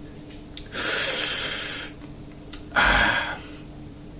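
A man breathing loudly twice while tasting beer: a long breath lasting about a second, then a shorter, sharper one near the end.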